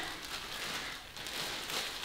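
Clear plastic packaging crinkling and rustling as it is opened and a garment is pulled out of it.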